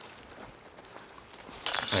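Quiet outdoor background noise with a faint steady high tone and no distinct event; a voice starts near the end.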